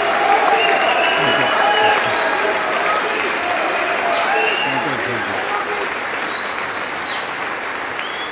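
A large audience giving a standing ovation: sustained applause, easing slightly toward the end.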